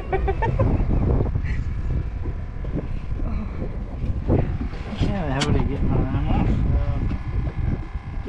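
Wind rumbling on the microphone, with laughter at the start and indistinct voices about halfway through.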